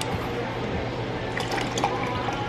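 Cranberry-pineapple juice poured from a large plastic bottle into a glass, a steady liquid pour filling the glass.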